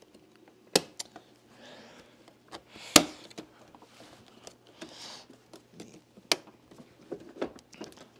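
Hard plastic parts of a Bosch Formula canister vacuum's housing being fitted and pressed together by hand: a series of sharp clicks and knocks, the loudest about three seconds in, with soft scuffing and rubbing of plastic between them.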